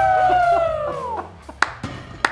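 A man's long drawn-out shout, falling in pitch, from the men cheering a deadlift of 475 pounds, followed by two sharp knocks near the end.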